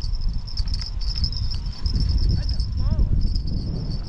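A steady high insect chorus trilling continuously over a low rumble of wind on the microphone, with a few faint clicks.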